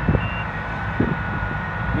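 Fendt 824 Vario tractor engine running as it drives pulling a silage trailer, with a steady high whine over it. A reversing alarm gives a short beep near the start.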